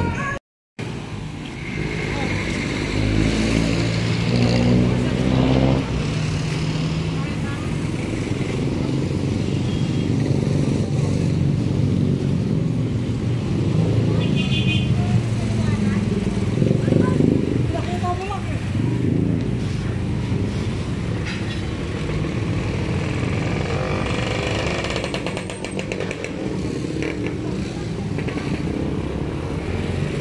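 A motorcycle engine running, its pitch rising for a few seconds early on, with people talking in the background.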